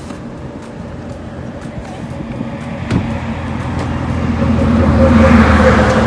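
A motor vehicle running with a steady low hum that grows steadily louder over the second half, with a single sharp knock about three seconds in.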